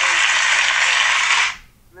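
Crowd applause and cheering, a dense even clatter of clapping that fades out about one and a half seconds in.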